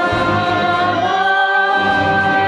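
Several voices singing together in harmony over a symphony orchestra, holding long sustained notes.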